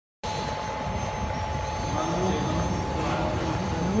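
Industrial bakery production-line machinery, the dough conveyor and oven equipment, running with a steady mechanical rumble. A thin steady whine sits over it in roughly the first half.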